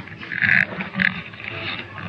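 Two short, breathy vocal sounds from a man, about half a second apart, without words.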